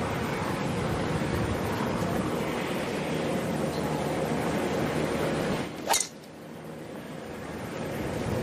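Steady outdoor wind noise, then, about six seconds in, a single sharp crack of a golf club striking the ball.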